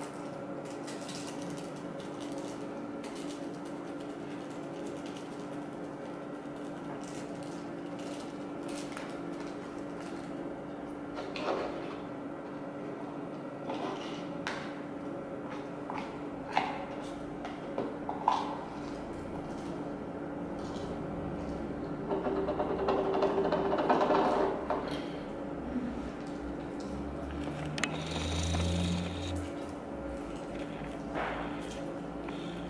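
Slime being stirred and kneaded by hand in a plastic bowl: scattered small clicks and soft handling noises over a steady room hum, with a louder stretch of rubbing and rustling about two-thirds of the way through.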